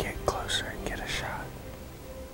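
A man whispering a short sentence, ending about a second and a half in; speech only.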